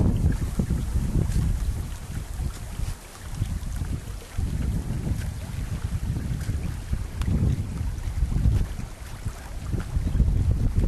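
Wind buffeting the camera microphone in gusts: a loud, uneven low rumble that swells and dips every second or two.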